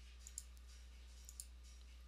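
Computer mouse clicks: two quick pairs of faint clicks about a second apart, over near silence.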